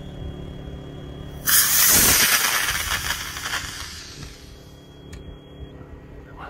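Model rocket motor, an Aerotech E11-3J reload, igniting about a second and a half in: a sudden loud rush of exhaust that fades over about three seconds as the rocket climbs away.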